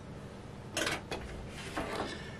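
Quiet kitchen handling: one brief soft clatter about a second in as a glass bowl and wire whisk are put aside, with a couple of faint clicks after it.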